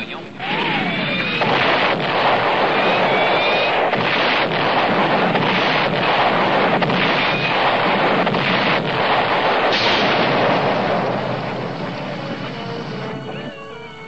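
Animated-series sound effect of a volcano erupting: a long, loud rumbling roar with several sharp blasts in it. It fades away near the end as music comes in.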